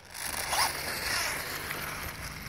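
Electric 1/10-scale RC buggy with a 3.5-turn brushless motor running over cobblestones: a high motor whine with tyre rattle, starting up about half a second in.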